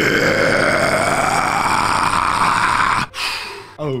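A man's deep, rough metal-style vocal growl, started suddenly and held for about three seconds before it cuts off.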